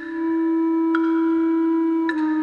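Contemporary chamber ensemble music: a long, steady low wind note held throughout, with a glockenspiel note struck about a second in and left ringing.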